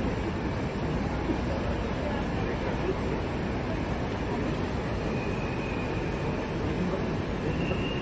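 Steady, indistinct background noise of an airport terminal entrance: a continuous low rumble with faint, unclear voices mixed in.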